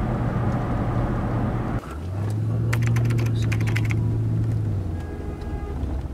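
Car cabin noise while driving: a steady engine and road drone that shifts abruptly to a steadier hum a little under two seconds in, with a brief quick run of clicks about three seconds in.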